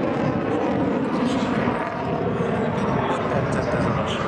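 Jet noise from a Dassault Rafale's twin Snecma M88 turbofans as the fighter flies its display overhead: a steady, loud rush.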